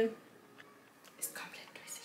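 A woman's voice: the end of a spoken word, then a quiet pause broken a little over a second in by brief soft, whispery speech.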